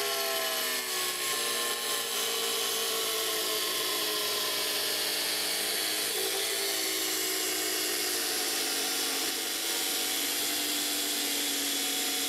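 Angle grinder with a Tyrolit diamond blade cutting through hard reinforced tile: a steady grinding whine under load, its pitch sagging slightly over the first few seconds as the blade bites in.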